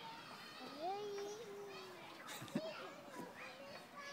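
A toddler singing on a swing: one long held note that lifts in pitch about a second in, followed by shorter rising and falling sung sounds. A sharp click comes about halfway through.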